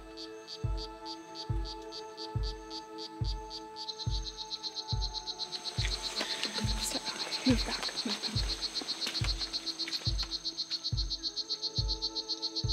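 Strawberry poison dart frog calls played back through a small speaker: a fast run of high chirps that thickens about four seconds in, used to test whether frogs approach the sound. Background music with a steady low beat plays underneath.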